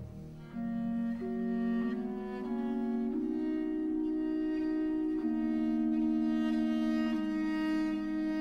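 Early-Baroque bowed strings playing slow, sustained notes that move from one held pitch to the next, after a brief dip in loudness at the very start.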